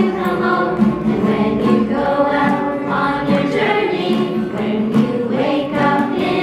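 A small choir of men and women singing a song together, moving from one held note to the next.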